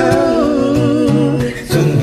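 A man and a woman singing a slow pop ballad as a duet over a backing track with guitar. They hold long, wavering notes, with a short break about one and a half seconds in.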